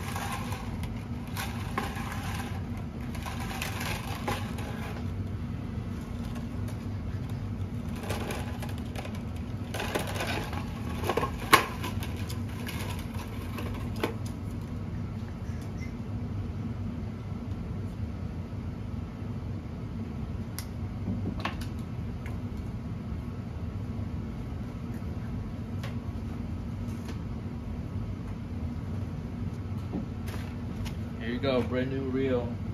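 Hyper-G 17-gauge tennis string being pulled off its reel and handled, with rustling and scraping in the first few seconds and again from about eight to fourteen seconds in. A sharp click comes about eleven seconds in, over a steady low hum.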